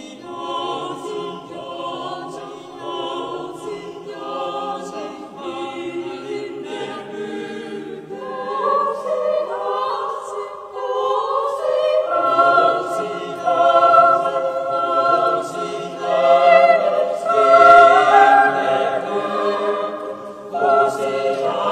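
A group of voices singing together unaccompanied, a choral piece whose long held chords swell louder from about eight seconds in and are loudest in the second half.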